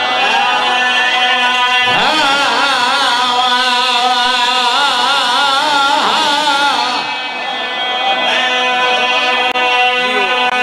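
A man's voice chanting a melismatic recitation over a loudspeaker system, holding long notes with heavy vibrato, over a steady drone tone.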